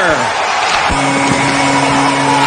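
Arena goal horn signalling a goal: a steady low blast that starts abruptly about a second in and holds, over a haze of crowd noise.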